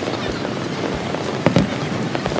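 A firework bursting with one sharp bang about one and a half seconds in, over a steady rushing background noise.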